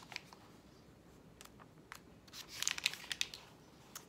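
Pages of a paperback book being turned: a few light ticks, then a burst of crisp paper rustling past the middle.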